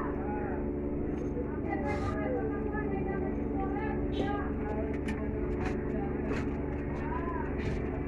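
Indistinct background voices over a steady low mechanical hum, with scattered light clicks from small metal parts being handled.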